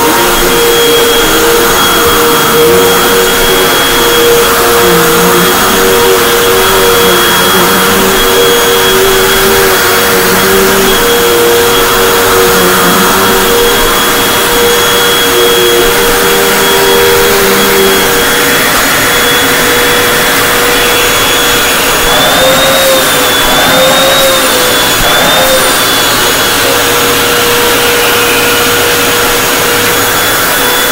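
Hoover WindTunnel 2 High Capacity (UH70800) upright vacuum with a 12-amp motor, running continuously while vacuuming a rug. Its steady motor whine is joined for the first half by a second tone that wavers as the machine is worked; about three-quarters of the way through, the motor's pitch wobbles up and down briefly.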